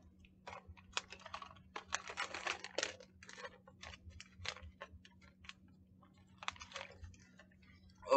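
Plastic snack bag of sunflower seeds crinkling as it is handled: faint bouts of crackling, a dense run about one to three seconds in and a shorter one near the end.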